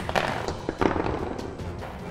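Background music with a few light, sharp taps and clicks: small plastic toy hammers knocking on the plastic ice blocks of a penguin ice-breaking tabletop game.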